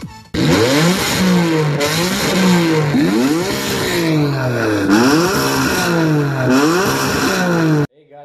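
A car engine revving again and again, its pitch climbing sharply and then easing back down each time, cut off abruptly shortly before the end.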